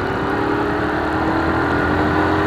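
Motorcycle engine running at a steady cruise with a constant hum, along with wind and road noise, as the bike rides along the street.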